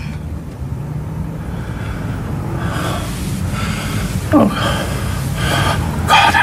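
A person's breathy gasps and heavy emotional breaths, with a short falling voiced sound about two-thirds of the way in, over a steady low hum.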